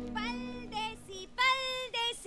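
A high voice sings short, gliding phrases over the film's music. A held low music tone fades out just after the start.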